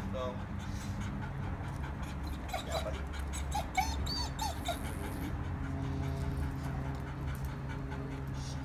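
A dog whimpering: several short, high whines in the middle of the stretch, over a steady low background hum.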